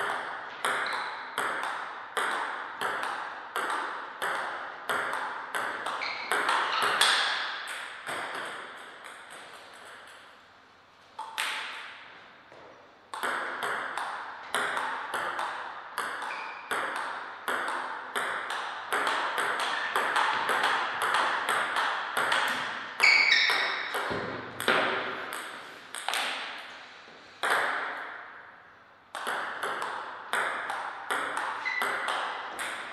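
Table tennis ball clicking back and forth between bats and table in fast rallies, about two hits a second. Play breaks off twice between points.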